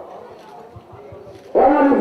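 A short lull with background murmur, then about one and a half seconds in a group of schoolboys breaks into a loud, shouted chant in unison, the call that keeps time for their exercises.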